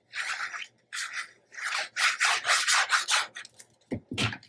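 Hands rubbing and sliding on patterned cardstock: a series of short brushing strokes, coming faster and louder after the first couple of seconds, with a soft knock near the end.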